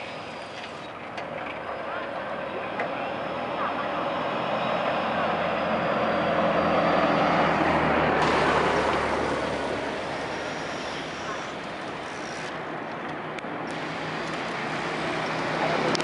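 A diesel minibus drives past close by. Its engine and tyre noise builds to a peak about halfway through and then fades, and another vehicle approaches near the end.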